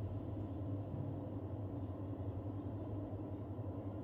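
Steady low background hum with no distinct events, most of its energy low and a faint steady tone above it; no frying hiss stands out.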